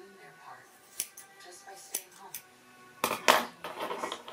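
Hair-cutting scissors snipping through a lock of hair: single sharp snips about one and two seconds in, then a louder cluster of snips just after three seconds. Faint background music plays underneath.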